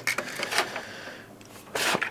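Handling noise: cables and a small plastic meter housing rubbing and scraping as they are held and moved against a wall, with a few faint clicks and a short hiss near the end.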